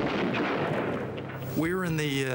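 A bomb explosion: a noisy blast that lasts about a second and a half, over a steady low hum.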